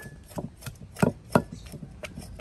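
Wooden pestle pounding in a mortar, crushing chili and other ingredients for a dipping sauce: about five dull knocks at an uneven pace, the loudest near the middle.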